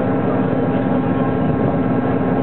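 Steady engine drone and running noise of a moving train, heard from inside the passenger carriage, with a strong unchanging hum.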